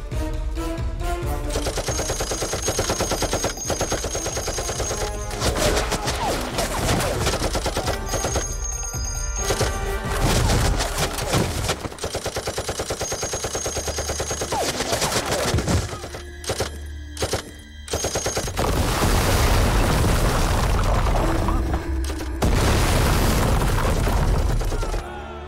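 Rapid automatic gunfire from a film action scene, running under dramatic background music. It dips briefly twice about two-thirds of the way in, then grows louder toward the end.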